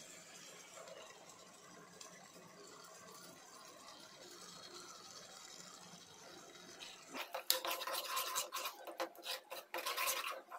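A steel ladle stirring thick puree into an onion mixture in a pot. It starts about seven seconds in as rapid scraping strokes against the pot, with light clinks, after a faint steady background hiss.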